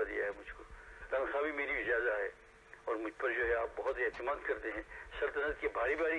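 Only speech: a man preaching in Urdu, in phrases broken by short pauses, the voice thin and narrow.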